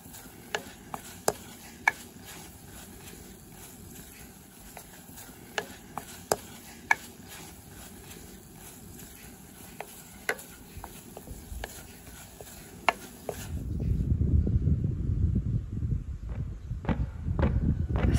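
Fresh green tea leaves being roasted in a hot stone pot, stirred and tossed with a wooden spatula: irregular sharp clicks of the spatula against the stone over a low steady hiss. A louder low rumble comes in about three-quarters of the way through.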